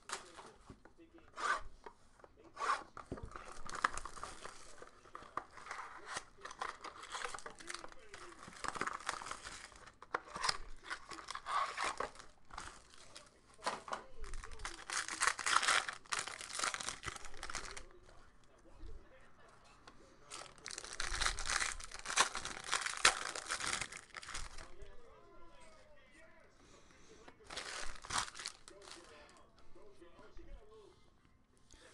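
Clear plastic wrapping on a trading-card pack being torn open and crinkled by hand, in repeated bursts a few seconds apart.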